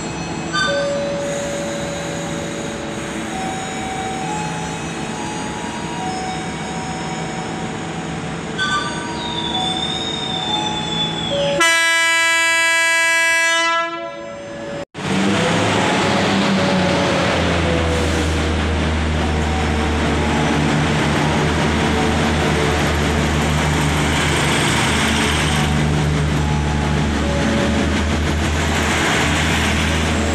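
KRD MCW 302 diesel railcar with its Cummins NT855-5R engine running at the platform. Partway through there is a horn blast of about two and a half seconds. After a brief break, the engine runs louder with a deep rumble as the train pulls away.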